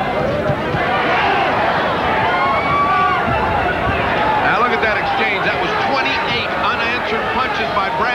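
Arena crowd at a boxing match: many voices shouting and calling over one another in a steady din.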